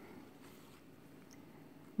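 Faint, steady room tone with no distinct sound.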